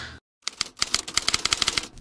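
Rapid typewriter-like clicking, about a dozen clicks a second for about a second and a half, used as a title-card sound effect. It starts after a brief moment of dead silence.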